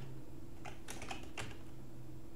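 Typing on a computer keyboard: a quick run of about six keystrokes between half a second and a second and a half in, over a low steady hum.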